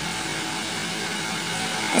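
Steady background hiss with a faint low hum and no distinct events.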